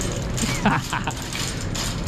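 Metal shopping cart rattling as it is pushed across a store floor, with a brief snatch of voice about half a second in.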